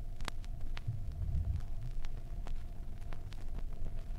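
Surface noise of a 1967 7-inch vinyl record playing at 33⅓ RPM in the blank groove between two tracks: a steady low rumble and hum, with scattered clicks and pops.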